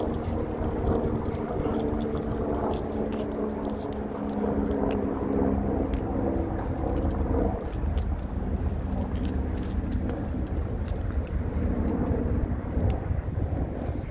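Outdoor walking ambience: a low rumble of wind on the microphone with scattered light clicks. A steady droning hum of several tones runs through the first half, stops about seven and a half seconds in, and comes back faintly near the end.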